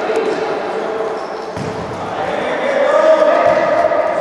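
A futsal ball being kicked and bouncing on a hard indoor court, the knocks echoing around the sports hall over players' shouts. The voices grow louder about three seconds in.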